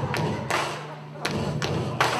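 Four sharp thumps at uneven spacing, over a steady low hum.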